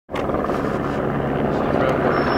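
Helicopter flying past: steady rotor and engine noise.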